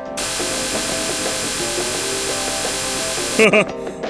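Steady electric buzzing sound effect for a superhero's heat-vision beam, lasting about three seconds and cutting off suddenly. It plays over light background music, with a short laugh near the end.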